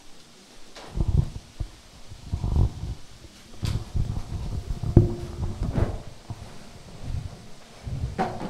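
Handling noise from a handheld microphone being passed along and picked up: several irregular low thumps and rubbing rumbles.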